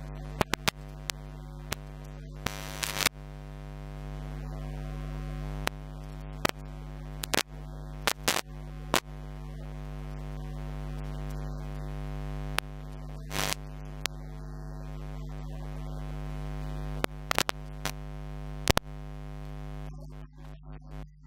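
Steady electrical mains hum in the recording, broken by irregular sharp crackles and pops about a dozen times. No voice comes through.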